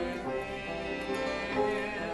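A church congregation singing a hymn with piano accompaniment.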